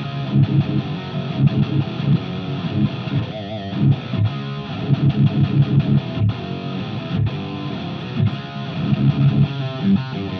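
Electric guitar riff of quick, rhythmic low picked notes, played through a Quad Cortex amp profile into a Positive Grid Spark Cab speaker cabinet and heard through a Sennheiser e609 microphone in front of the cab.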